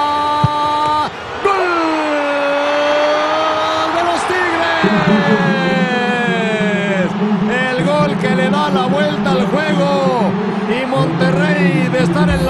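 A Spanish-language football TV commentator's drawn-out goal cry, one long held 'gooool' shouted for several seconds, sagging in pitch as his breath runs out. It breaks into quick, excited up-and-down calls in the second half, with a lower voice held underneath.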